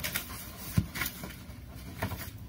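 Soft rustles and light taps of paper being handled, a card guidebook's pages leafed through, with a few faint scattered clicks.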